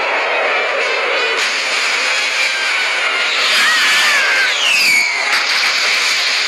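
Loud, steady rushing and splashing of churning sea water as a giant whale heaves up out of the waves, an animation sound effect. A wavering tone, then a tone gliding down in pitch, rises over the water noise a little past halfway.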